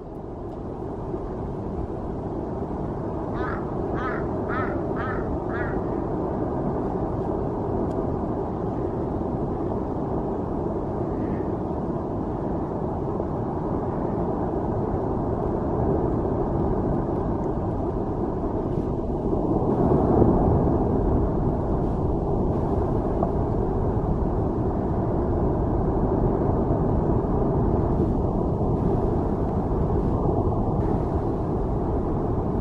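Avalanche of snow and ice from a collapsing glacier rumbling down the mountainside: a steady low roar that swells about two-thirds of the way through. About three seconds in, five short high calls sound in quick succession.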